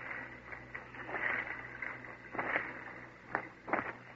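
Radio-drama sound effect of men walking slowly through grass: a few scattered, irregular soft rustles and crunches over faint recording hiss.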